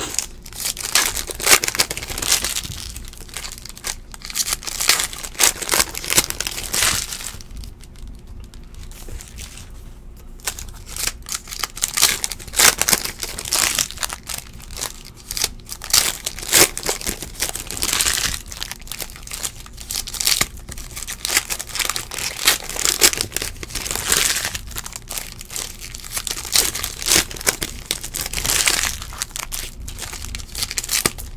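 Foil trading-card pack wrappers crinkling and being torn open by hand, in busy bursts with a short lull partway through.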